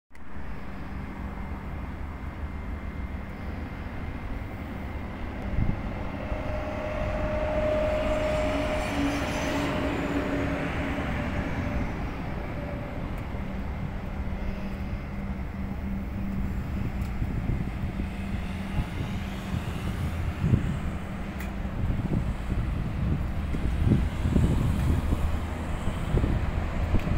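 Outdoor vehicle or engine rumble with a steady low hum. A held tone swells and fades about a third of the way in, and wind buffets the microphone in the last few seconds.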